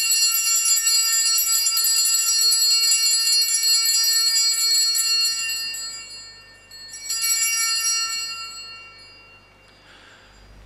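Altar bells rung at the elevation of the consecrated host: one long shimmering peal, then a second, shorter one about seven seconds in that fades away.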